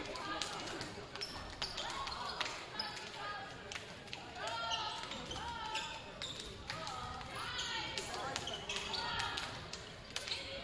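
Chatter of players and spectators in a school gymnasium, with short sharp knocks scattered throughout from a basketball bouncing on the hardwood floor.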